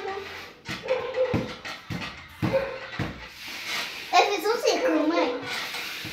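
A run of dull knocks, about two a second, from hands slapping and pressing homemade playdough onto a tabletop, followed by a child's voice speaking briefly.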